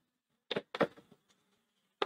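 Chalk writing on a blackboard: a few short scratching strokes close together about half a second in, and another just at the end.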